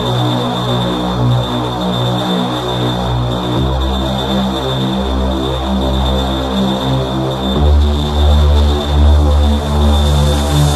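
Dark electro / EBM track with sustained synth bass and pad notes that shift to a new chord about every four seconds, over a steady high synth tone.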